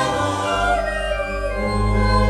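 Mixed choir of young voices singing with organ accompaniment. Deep, sustained organ bass notes come in about half a second in under the held choral chords.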